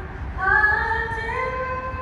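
A woman singing solo into a microphone, amplified at a ballpark: a brief breath, then a new phrase of long held notes that step upward in pitch.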